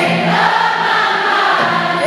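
Live pop performance: a male voice holds one long sung note over a strummed hollow-body guitar, with many voices singing along around it.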